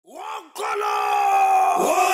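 A voice gives a short rising-and-falling cry, then holds one long loud shout. Near the end another voice whoops upward, with a crowd behind.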